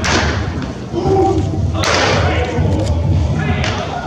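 Pitched baseballs smacking into catchers' mitts in an indoor bullpen: two sharp catches about two seconds apart and a fainter one near the end, each echoing in the hall, over a low rumble and voices.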